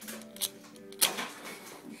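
A paper book match struck on the matchbook's striker: a short scrape about half a second in, then a louder one about a second in as it lights. Faint steady background music of held tones plays underneath.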